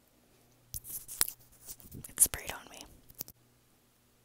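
Small knife cutting and scraping into orange peel close to the microphone: a run of crackly scraping sounds with sharp clicks, loudest a little past the middle, stopping suddenly.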